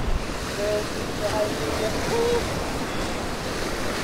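Waves washing against the jetty rocks, a steady rushing noise, with wind buffeting the microphone.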